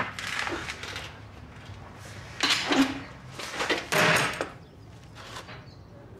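A handful of short scrapes and clunks of a lock being worked open by hand, the keys having been lost.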